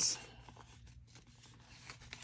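Faint rustling and crinkling of a paper banknote and a clear plastic envelope sleeve being handled, a crisp brief rustle at the very start and then quieter handling.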